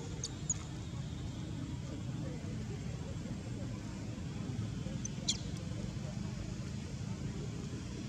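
Steady low outdoor background rumble, with a few brief, high, falling squeaks: two right at the start and one about five seconds in.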